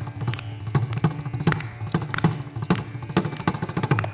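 Mridangam strokes in a Carnatic concert: sharp, uneven strokes in a sparse passage of percussion, with a faint steady drone under them.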